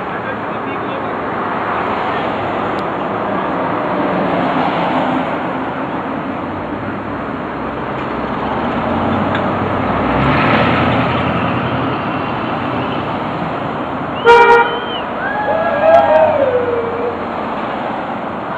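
Steady city traffic passing close by, with a truck going past about ten seconds in. Three-quarters of the way through, a single short car horn toot, which answers the protesters' "HONK" signs, is followed by voices calling out from the roadside.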